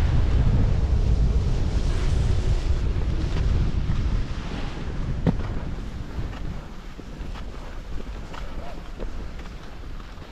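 Wind buffeting the microphone of a skier moving down a groomed run, mixed with the hiss of skis on snow. The rush is heavy at first and eases after about four seconds, with a sharp tick about halfway through.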